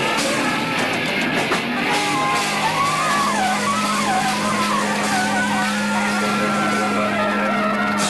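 Live ska-punk band with distorted electric guitars. A low chord is held while a lead line bends and wavers, then settles into a long sustained high note, with the drums dropping out after the first couple of seconds.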